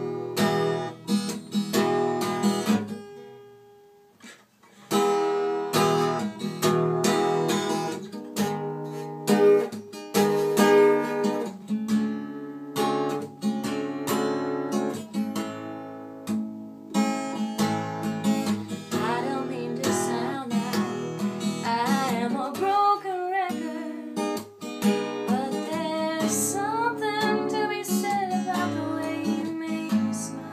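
Acoustic guitar played in chords, with a short pause about four seconds in before the playing resumes. A singing voice joins the guitar over the second half.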